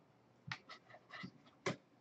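A few soft clicks and taps from gloved hands handling a trading card, with the sharpest click near the end.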